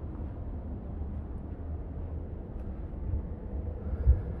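Steady low rumble with a faint hiss and a few soft clicks.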